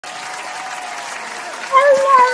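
Steady, dense applause, joined near the end by a voice breaking in loudly.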